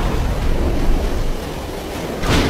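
Anime fan animation soundtrack: a steady, low, noisy rumble like wind and storm surf, with no music or voice over it.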